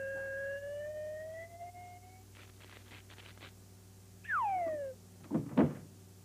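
Cartoon-style sound effects of a toy wind-up machine working: a whistle-like tone slowly rising in pitch, a few faint clicks, a quick falling whistle glide, then a short thump near the end.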